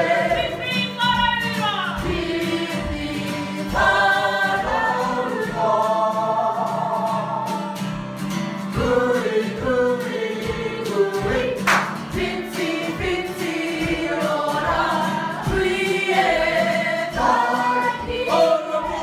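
A group of voices singing a Māori waiata over a steady beat.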